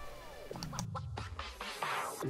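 Edited-in music transition effect: several tones sliding down in pitch together over about a second and a half, like a record being scratched or slowing to a stop.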